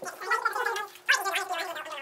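Boys laughing and making garbled voice sounds, with a sharp crinkle about a second in as candy wrappers are torn open.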